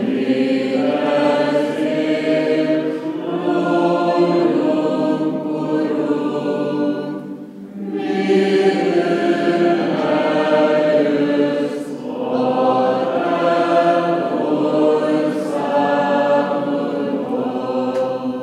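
A group of voices singing unaccompanied Greek Catholic liturgical chant in long sustained phrases, with short pauses about seven and twelve seconds in.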